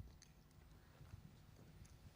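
Near silence: room tone with a low hum and a few faint clicks.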